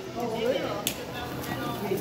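Small plastic cruiser skateboard rolling over tiled floor, with one sharp click a little under a second in, under faint background voices.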